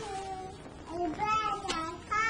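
A few high-pitched, drawn-out wordless vocal calls that bend in pitch, one falling at the start and more a second or so in.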